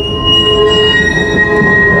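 Historic tram's steel wheels squealing on the rails as the car rounds a curve: a loud, steady squeal of several pitches at once over the low rumble of the running car, with the highest pitch dropping out about a second in.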